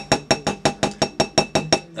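Bar muddler knocking rapidly against a glass tumbler, about seven quick clinks a second, each with a short glassy ring.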